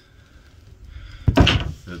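A sudden thump a little over a second in, followed by a short rush of noise.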